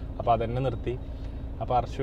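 A man speaking in short bursts inside a car, over a steady low hum from the car.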